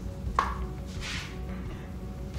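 Background music with a single sharp knock about half a second in: a small cup set down in a plastic tray.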